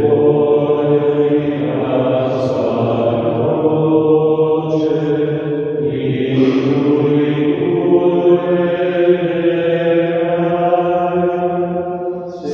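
Slow devotional chant during eucharistic adoration, sung in long held notes in phrases about six seconds long.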